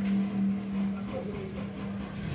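Starter motor cranking a Honda CR-V's 2.4-litre four-cylinder engine with a steady whir and a slow, uneven rhythm; the battery is weak and the car is on jumper cables.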